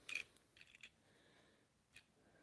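Near silence, with a few faint clicks of a small toy train engine being handled and turned over in the hands, bunched in the first second and one more near the end.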